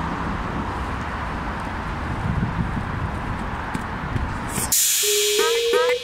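Steady outdoor noise of road traffic, a low rumble under an even hiss, which cuts off abruptly near the end as electronic background music begins.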